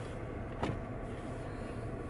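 Steady low rumble of a minivan heard from inside the cabin, with a single brief click about half a second in.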